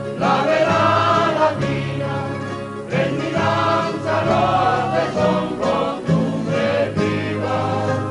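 Traditional Canarian folk music: a group of voices singing together in chorus over string accompaniment, in sung phrases a couple of seconds long.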